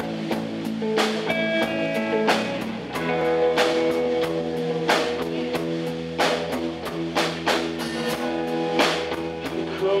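Live band playing an instrumental passage on electric guitars, bass guitar and drum kit, with steady drum hits and a change of chord about three seconds in. A male voice starts singing at the very end.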